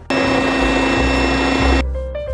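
Electric food processor motor running in a loud, steady whir as it chops chunks of onion, pepper and herbs for salsa. It starts suddenly and cuts off suddenly after about a second and a half.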